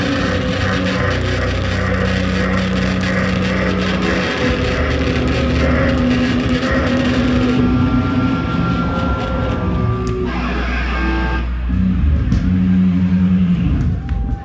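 Hardcore punk band playing live and loud through a club PA: distorted electric guitars, bass and drums. The music thins a little past halfway, with held guitar notes ringing, and the song stops abruptly at the very end.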